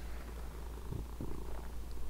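Domestic cat purring softly, a low steady rumble.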